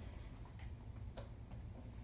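Low steady room hum with a couple of faint, irregularly spaced clicks.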